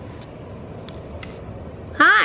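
Forced-air heating blowing through a floor heater vent: a steady low rumble of moving air, with a couple of faint ticks.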